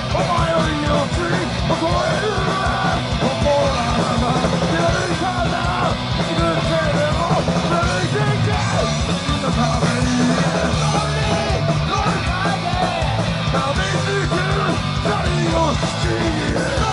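Hardcore punk band playing live: electric guitars and drums with a singer on the microphone, loud and continuous, recorded from within the crowd.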